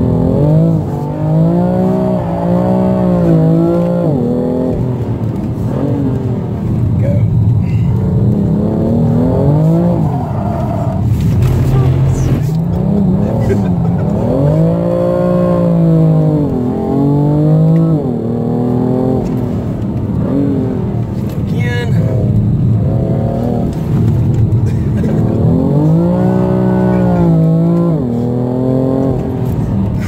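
BMW M3 engine heard from inside the cabin, revving up and falling back over and over as the car is driven hard around a track. The pitch climbs and drops every few seconds, with the strongest rises about two, fifteen and twenty-six seconds in.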